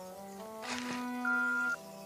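Background music of slow, held notes, with a single steady electronic beep about half a second long near the end: a mobile phone's voicemail tone just before a message is left.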